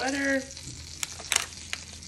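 Butter sizzling in a hot carbon steel pan, a steady hiss with three sharp pops in the second half.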